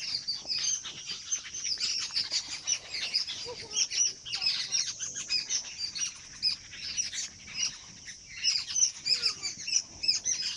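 Many small birds chirping and twittering busily in a tree: dense, overlapping short high chirps that run without pause.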